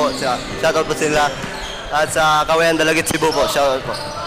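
A young man speaking into a handheld microphone, with basketballs bouncing on the hardwood gym floor in the background.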